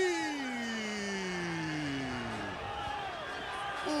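A football commentator's long drawn-out goal cry: one held shout that starts high and slides slowly down in pitch for about two and a half seconds, followed by a shorter falling cry.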